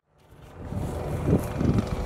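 After a brief silence, outdoor background noise fades in: a low, uneven rumble.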